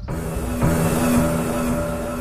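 Background music: a new cue starts abruptly, with held sustained tones over a low repeating note.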